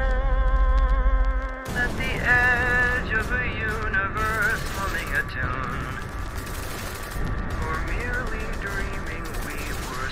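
Meme sound edit: a held note over a deep rumble cuts off suddenly about one and a half seconds in. It gives way to a war-scene mix of gunfire and explosions, with shouting voices and music.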